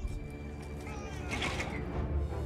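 Cinematic battle-sequence soundtrack: sustained music with a short wailing cry, bending in pitch, about one and a half seconds in.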